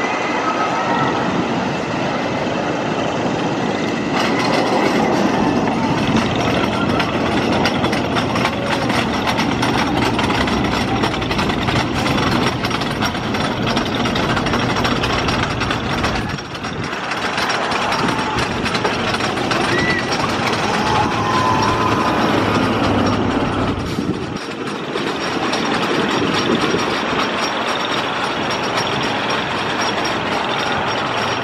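Philadelphia Toboggan Coasters wooden roller coaster train running along its track, a steady rumble mixed with passing road traffic. The sound dips briefly twice, about 16 and 24 seconds in.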